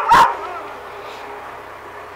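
A dog barking: a couple of short, sharp barks right at the start, then only a low, steady background.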